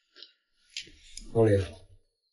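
Two light clicks of chopsticks against a porcelain bowl during a meal, then a voice calls out a name.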